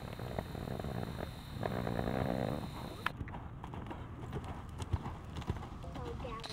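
A horse loping on a soft dirt arena: its hoofbeats fall in the rolling rhythm of the gait, with a few sharper knocks among them.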